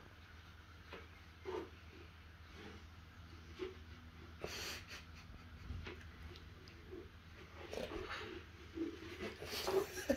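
Clear plastic tub knocking and scraping on a hard floor as a kitten, its head inside the tub, pushes it about: irregular hollow knocks and scuffs, the sharpest about halfway through and again near the end.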